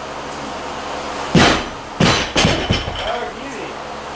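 A 155 kg barbell loaded with rubber bumper plates dropped from overhead onto a lifting platform: one heavy thud about a second and a half in, followed by several smaller bounces and rattles over the next second as the bar settles.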